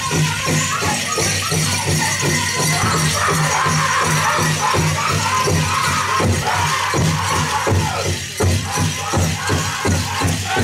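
Pow wow drum group singing in high voices over a fast, steady beat on a big drum, with the metal cones of jingle dresses rattling. The drum strokes grow heavier near the end.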